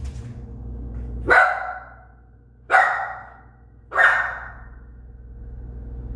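Young dog barking three times, single sharp barks about a second and a half apart.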